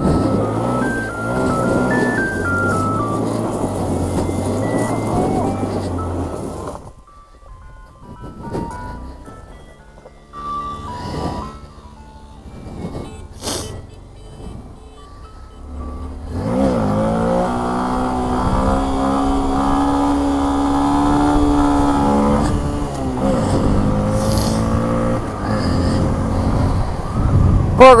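An electronic novelty horn or siren sounding its car-alarm pattern: first a run of stepping beeping tones, then, about two-thirds of the way in, a loud wavering alarm tone. The vehicle's engine runs underneath.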